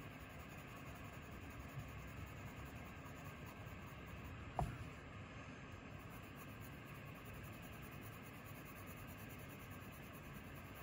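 Faint, steady scratching of a 4B graphite drawing pencil shading lightly on paper, with a single knock about four and a half seconds in.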